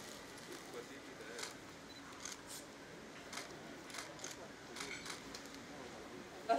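Quiet ambience of a gathering: faint background voices with a few scattered soft clicks.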